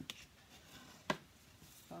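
Sheet of scored cardstock being handled and slid across a wooden tabletop, with one sharp tap about a second in.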